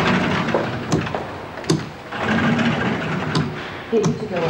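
Motorised barred prison gate buzzing as it slides open at the press of a wall button, with a few sharp clicks and clunks from its mechanism.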